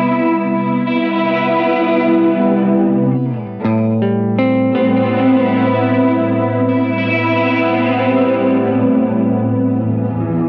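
Electric guitar chords played through Eventide delay and reverb pedals, ringing out in long sustained washes. There is a chord change with a fresh strum a little over three seconds in.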